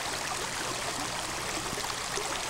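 A steady, even rushing noise, with a faint low hum beneath it.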